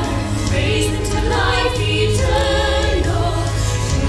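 Live rock opera music: several women's voices singing together over a band with a steady, heavy bass.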